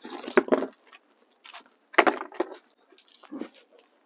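Hand-held plastic spray bottle misting water onto the leaves of a potted plant: several short spritzes with pauses between them.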